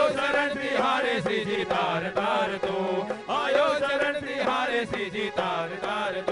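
A group of men singing a Hindi devotional bhajan together, with rhythmic hand-clapping and instrumental accompaniment.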